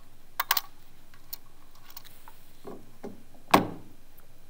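Small sharp metallic clicks as a straightened paper clip pries a CR2032 coin-cell battery out of its holder on the back of an HMI touchscreen unit: a quick run of three clicks early on, then a few fainter ticks. A louder single knock near the end as the screen unit is set down on the wooden bench.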